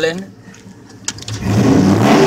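2002 Dodge Ram pickup's engine revving through Flowmaster mufflers, coming in about one and a half seconds in and building to a loud, low growl.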